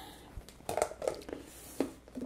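A few faint, short rustles and taps of hands handling things on a tabletop.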